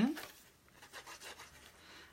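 Faint rubbing and rustling of a paper card and its embellishments being handled on a craft table, a few soft scrapes.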